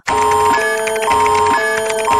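Looping electronic beeping tune of steady tones, a short pattern repeating about twice a second, starting abruptly.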